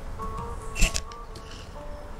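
Quiet background music with held, tinkly tones. A few computer keyboard keystrokes tap over it, the loudest a little under a second in.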